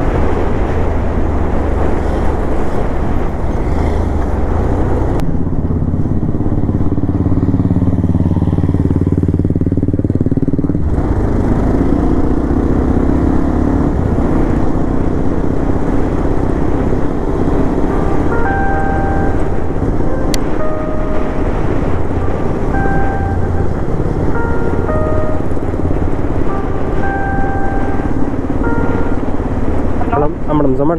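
Bajaj Pulsar 220F single-cylinder motorcycle engine running on the move, with wind noise on the microphone. About five seconds in, the wind hiss falls away for several seconds while the engine note swings up and down, then the steady riding noise returns.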